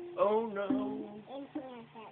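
A voice singing or vocalizing a bending, drawn-out line over a few held ukulele notes, the whole fading toward the end.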